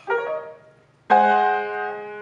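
Upright piano: a chord near the start that fades out, then a louder chord struck about a second in and left ringing.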